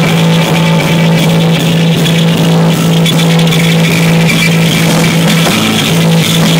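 Live rock band playing an instrumental passage: electric guitar, electric bass and drum kit, loud and dense, with a low note held steady that shifts just before the end.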